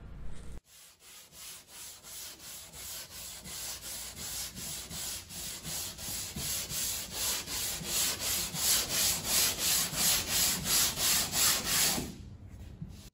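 Hand sanding block with abrasive paper rubbed back and forth over dried joint filler on a plasterboard wall, in even strokes about three a second, growing louder toward the end.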